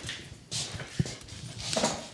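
Handling noises as a ukulele side, sandwiched with a heating blanket between spring-steel slats, is pushed down into a wooden bending jig: two short breathy rustles and one sharp click about a second in.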